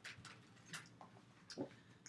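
Faint, scattered clicks and soft rustles of a tarot deck being shuffled and handled, with a couple of slightly sharper card snaps near the middle and about one and a half seconds in.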